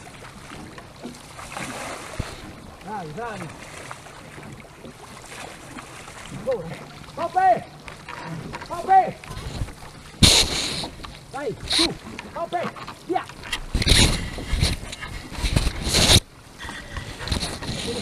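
A cloth flag blowing against the camera and rubbing over the microphone in loud rough scrapes from about ten seconds in, the loudest sound here. Before that, water sloshing around the oars of the rowed boat, with voices calling out.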